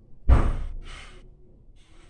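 A sharp, loud breath blown out close to the microphone, fading over about half a second, followed a moment later by a shorter, fainter breath.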